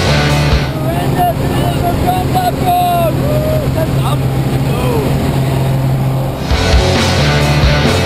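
Rock music soundtrack that gives way, about a second in, to a steady low drone of the jump plane's engine heard inside the cabin, with short whooping shouts from the passengers. The music returns about a second and a half before the end.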